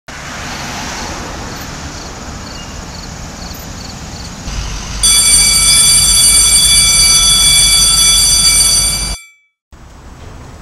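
A car passing on a road with traffic noise. From about five seconds in, a loud, steady, high ringing tone made of several pitches sounds for about four seconds and then cuts off abruptly.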